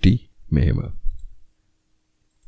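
A voice speaking a word or two, followed by a pause with nothing audible.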